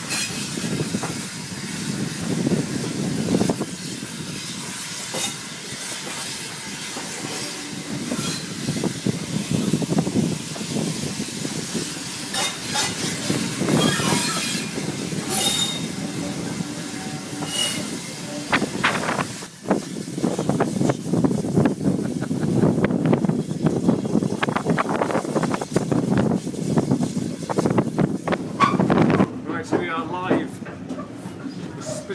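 Heritage railway passenger carriage running along the track, heard from on board: a steady rumble of wheels on rail with repeated clicks and clatter from the rail joints, denser in the second half, and a few brief high wheel squeals in the middle.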